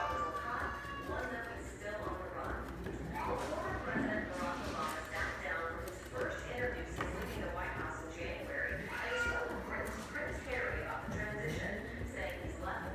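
Cat exercise wheel turning as a Bengal cat runs on it, with the cat's rhythmic footfalls on the track; voices talk over it throughout.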